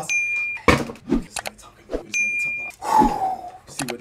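A short electronic alert chime, one steady high tone, sounds twice about two seconds apart: a live-stream follower notification. A sharp knock comes a little under a second in, and a brief falling vocal sound comes near the three-second mark.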